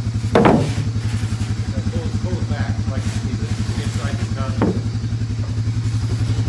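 A small engine idling steadily with an even, rapid pulse, with two brief louder sounds, one about half a second in and one just before the five-second mark.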